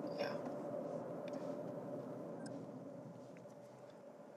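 Road and tyre noise inside a 2024 Toyota RAV4's cabin: a low, steady rumble that fades away over a few seconds as the car slows to a stop.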